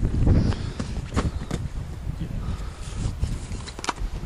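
Wind rumbling on the microphone, loudest in the first half-second, with a few short, sharp knocks: one at about a second in, one soon after, and one near the end.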